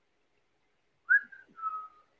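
A person whistling two short notes, the second lower and slightly falling, after about a second of quiet.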